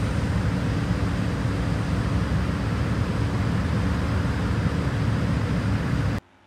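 Steady, loud low mechanical rumble with a faint steady hum running through it.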